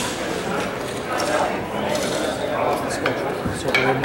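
Indistinct voices in a large hall with a few light metallic clinks.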